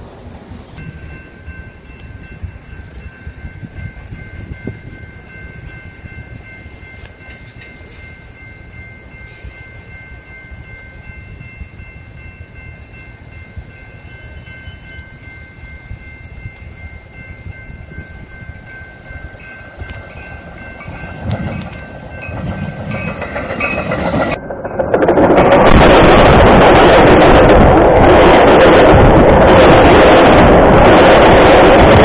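Metra commuter train, a Nippon-Sharyo cab car leading with an F40PHM-3 diesel locomotive pushing, approaching: a low rumble under a faint steady chord of high tones, growing louder toward the end. About 25 seconds in, the sound jumps to a very loud, continuous rumble and clatter as the train runs over a camera lying between the rails.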